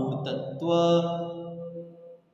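A man's voice drawing out one syllable on a steady pitch for about a second, in a chant-like way, fading near the end.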